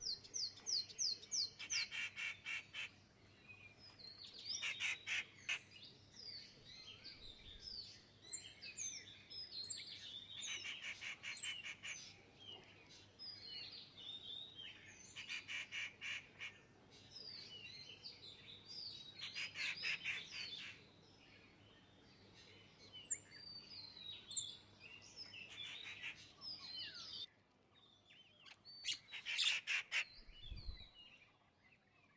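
Small birds calling outdoors: many short high chirps, broken up again and again by about one-second bursts of fast, rattling chatter.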